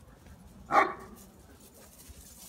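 A dog barks once, about three-quarters of a second in.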